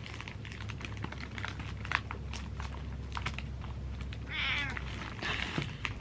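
Small plastic bag crinkling and crackling as it is handled, a rapid scatter of sharp clicks. A domestic cat gives one short meow about four and a half seconds in.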